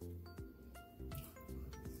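Quiet background music: a simple melody of held notes that change every fraction of a second over a soft bass.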